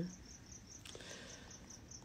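Faint insect chirping: a high, steady pulse repeating about four times a second, with a soft click about a second in.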